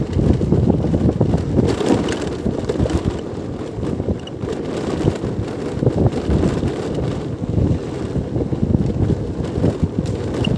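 Wind buffeting the microphone of a camera moving along a dirt road: a loud, continuous low rumble that flutters irregularly.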